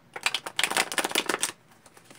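A deck of tarot cards being shuffled by hand: a rapid flutter of card edges snapping together for about a second and a half, stopping shortly before the end.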